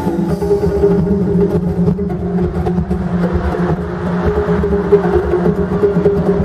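Live band playing upbeat dance music, without singing, led by timbales and congas over a steady bass beat and sustained keyboard notes, heard loud through an arena sound system.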